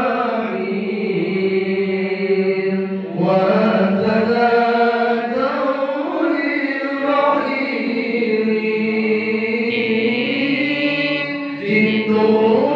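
A man chanting Arabic devotional praise of the Prophet (salawat, as sung in a marhaban recitation) into a microphone. The notes are long, drawn out and ornamented, with a short break between phrases about three seconds in and again near the end.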